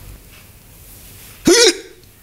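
A man hiccups once, loud and short, about one and a half seconds in: a brief voiced 'hic' that rises and falls in pitch.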